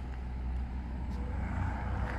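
Steady outdoor road-traffic noise: an even low rumble of vehicles that grows slightly louder near the end.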